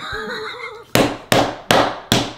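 A man lets out a loud laugh, then three sharp hand slaps about a third of a second apart, starting about a second in.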